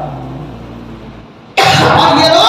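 A man's voice over a microphone pauses, trailing off to a faint low hum for about a second and a half. Then it comes back loudly with a sharp, breathy onset near the end.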